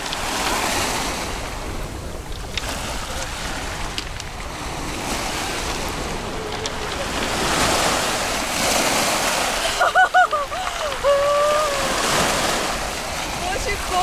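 Small waves breaking and washing up a pebble beach, swelling and fading every few seconds.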